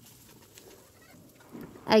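Faint sizzle of onions, peanuts and spices frying in oil in a kadai, with light scrapes of a spoon stirring. A voice begins near the end.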